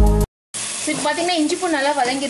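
A moment of background music cuts off, and after a brief silence ground masala paste sizzles as it fries in oil while a wooden spatula stirs it through a nonstick pot. A wavering pitched sound rises and falls over the frying.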